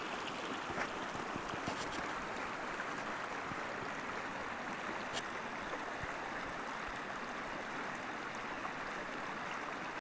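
Small mountain stream, running high with snowmelt, rushing steadily over shallow gravel and rocks.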